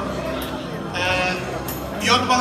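A man's voice through a microphone and PA speakers, with a lull and then one drawn-out syllable about a second in.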